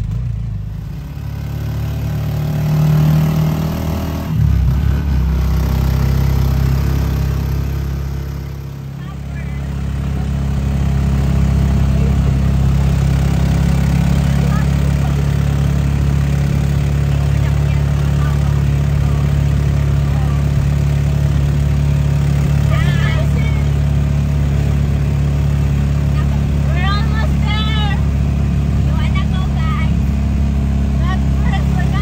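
Engine of a small open-backed passenger vehicle running as it drives along, heard from inside the cab as a steady low hum. The sound dips briefly about a second in and again around nine seconds in, then holds steady. Brief voices come in near the end.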